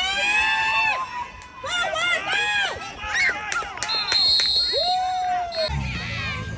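Sideline spectators shouting and cheering during a youth football play, in high, drawn-out calls, with a short whistle blast about four seconds in.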